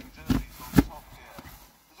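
Bedding and a sleeping bag being handled and spread out on a bed, with two dull thumps in the first second, the second sharper, then softer rustling that fades.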